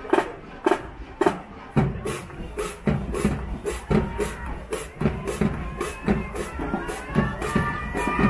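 Marching band drumline playing a steady beat: sharp strokes about twice a second, then fuller drumming with a low booming drum from about two seconds in. Crowd cheering and shouting rises near the end.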